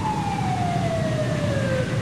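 Emergency vehicle siren winding down, a single tone falling slowly and steadily in pitch, over a steady low rumble.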